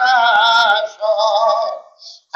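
A man singing a Bengali devotional song into a microphone: two long held notes with a wavering pitch, the second fading out just before the end.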